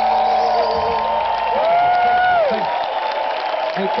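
Concert crowd cheering and shouting as a live band's last held chord stops about a second and a half in. A single long shout from someone in the crowd rises and falls soon after.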